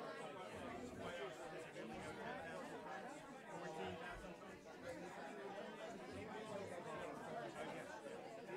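Crowd chatter: many people talking at once in a room, a steady babble of overlapping conversations.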